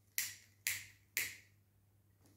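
A hand-held lighter struck three times, about half a second apart, while a cigarette held to the mouth is being lit.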